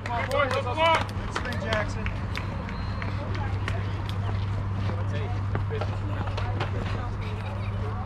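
A voice calls out "two, two", then outdoor ball-field background: faint distant voices, scattered short clicks and a steady low hum.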